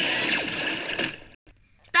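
Cartoon sound effect played through a tablet's speaker: a noisy whoosh of about a second with falling tones inside it, fading out.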